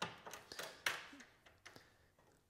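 Light taps and clicks of hands handling an aluminium crosscut fence and its bracket knob as it is tightened, with a sharper click right at the start and another just under a second in.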